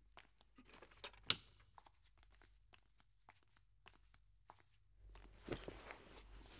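Faint scattered clicks and light handling noises of objects being moved as someone rummages through belongings, with a sharper click about a second in; the handling grows louder near the end.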